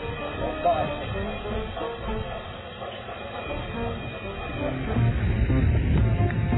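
Background music with voices mixed in; it gets louder about five seconds in.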